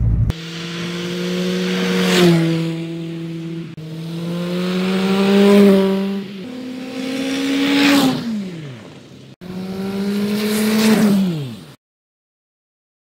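Peugeot 106 hatchback driving past on a road four times in quick succession. At each pass the engine note climbs and grows louder as the car approaches, with a rush of tyre noise as it goes by. On the last two passes the pitch drops sharply as the car passes. The sound cuts off abruptly just before the end.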